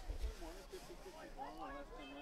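Faint, distant voices calling out, a few drawn-out calls that waver in pitch, over a low background rumble.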